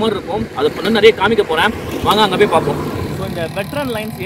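A man talking.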